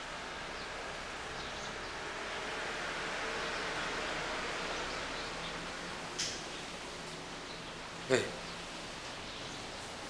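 Steady background hiss, broken by a short knock about six seconds in and a louder knock about two seconds later with a quickly falling tone.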